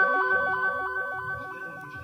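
Background music: a quiet electronic melody of quick stepping notes, about five a second, over held tones, fading out.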